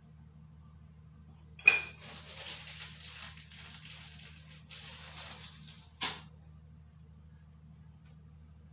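A glass pot lid clanks, then about four seconds of hissing sizzle follow as popcorn kernels go into hot oil in the pot. A second clank comes as the lid is set back on.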